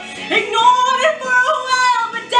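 A woman singing a musical-theatre song: a run of short sung notes with quick jumps in pitch.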